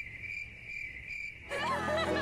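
Cricket-chirping sound effect, a steady high chirr pulsing a few times a second, the comic cue for an awkward silence. Background music comes in about a second and a half in.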